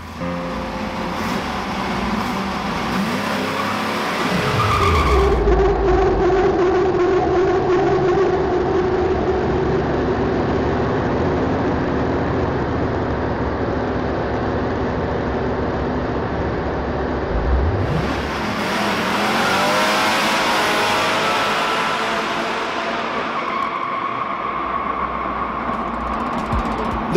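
1970 Chevrolet Nova Yenko Deuce's LT-1 350 small-block V8 revving hard while the rear tyres spin and squeal in a long burnout. The engine note falls and climbs again a couple of times.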